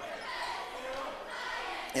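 Gymnasium ambience during a basketball game in play: a steady crowd murmur with court noise in a large hall.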